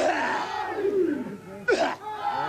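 Māori performers shouting ceremonial chant cries: loud, forceful calls with falling pitch, with a sharp new shout near the end.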